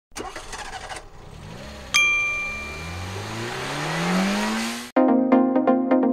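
Intro sting: a sharp metallic ding, then a car engine revving with its pitch rising steadily for about three seconds, cut off abruptly. Electronic music with a steady beat starts near the end.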